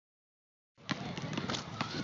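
Basketball dribbled on an outdoor asphalt court: a few short bounces over a steady outdoor noise bed. The sound starts about three-quarters of a second in, after silence.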